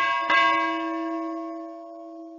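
Bell chime sound effect for a notification-bell icon: a bell struck twice in quick succession, about a third of a second apart, ringing on and slowly fading.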